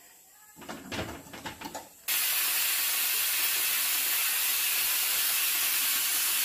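Light clinks and scraping of a spoon in an aluminium pressure cooker, then a pressure cooker venting steam: a loud, even hiss that starts abruptly about two seconds in and holds steady.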